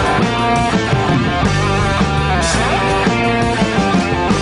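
Live rock band playing an instrumental passage: electric guitar and bass chords over drums, with a cymbal crash about two and a half seconds in.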